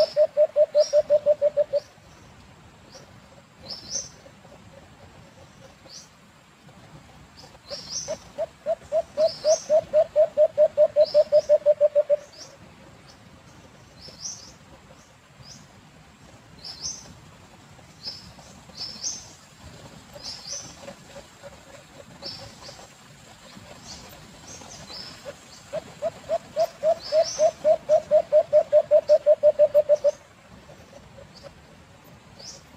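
Caged alimokon wild dove calling: a rapid series of low coos, about five a second, swelling in loudness over about four seconds. It calls three times, at the start, about eight seconds in, and near the end. Short high rising chirps recur throughout.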